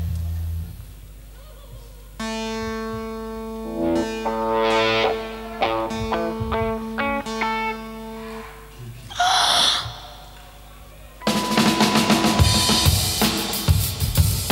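Live punk-rock band intro: slow held chords that change note every second or so, then a short noisy burst, and about three-quarters of the way through the full band comes in loudly with the drum kit beating out a rhythm.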